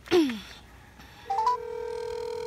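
A brief falling vocal sound from a person, then an outgoing phone call on speaker: three quick rising beeps about a second in, followed by a steady ringback tone.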